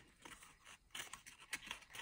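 Cardboard parts scraping and rubbing together as a cardboard piece is pushed into a slot between two cardboard uprights, giving a few short, faint scratches, mostly in the second second.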